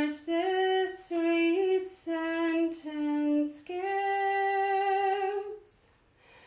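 A woman singing a hymn solo: a few short notes stepping up and down, then one long held note from about four seconds in that ends in a short hiss.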